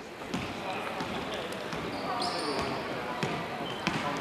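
A basketball being dribbled on a hardwood court, a run of bounces over the murmur of players and spectators in the hall, with a short high squeak about two seconds in.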